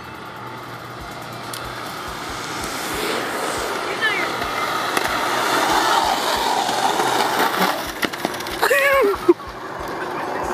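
Skateboard wheels rolling on asphalt, growing steadily louder as the board comes down the hill toward the camera. Near the end there is a short shout, then a single sharp knock.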